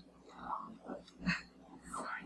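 Faint, soft speech in a small room: a few quiet, whispered-sounding words between louder talk.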